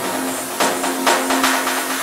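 Electronic dance music in a breakdown with no bass: a held synth note under evenly spaced percussive hits.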